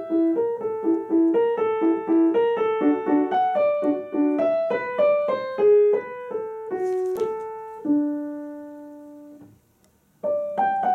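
Grand piano playing a slow, even melody over a repeating accompaniment; the phrase ends on a held low note about eight seconds in that fades away to near silence before the next phrase starts.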